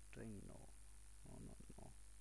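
A man's voice speaking briefly twice, quietly, over a low steady hum.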